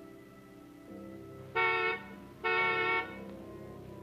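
Car horn honking twice, two steady blasts, the second a little longer: a ride has pulled up and is signalling that it is waiting.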